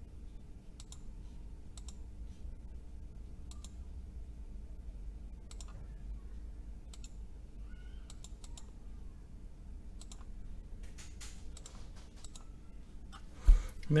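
Faint computer mouse clicks, a dozen or so at irregular intervals with a quicker cluster near the end, over a low steady hum. A single dull thump, the loudest sound, comes just before the end.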